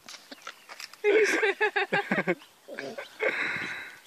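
A llama making throaty noises as it works up to spit, with a person laughing: a choppy run of sounds about a second in, then a longer raspy hiss near the end.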